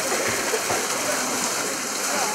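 Small spring-fed waterfall pouring steadily into a shallow log-lined pool, a steady rush of falling and splashing water as a man wades in and steps under the stream.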